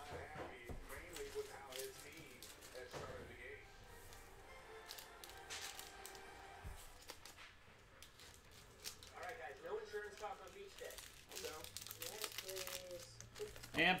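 Trading cards being handled and flipped through, making light clicks and paper-like rustles, with a faint voice at times.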